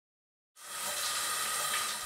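A shower running: a steady hiss of spraying water that fades in after about half a second of silence.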